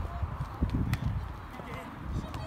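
Faint, distant voices of soccer players calling out across the field, over an uneven low rumble on the microphone that swells about halfway through.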